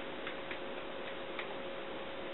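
A few faint light clicks of buttons being pressed on an office photocopier's control panel, over the machine's steady low hum and hiss.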